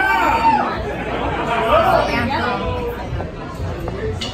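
People chattering, with indistinct voices close to the microphone.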